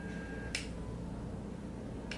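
A single sharp click about half a second in, from a menu button on a Clearview FPV goggle being pressed to change a setting, over a faint steady low hum.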